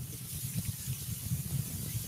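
Steady background noise on an open call line, a low rumble with a faint hiss over it.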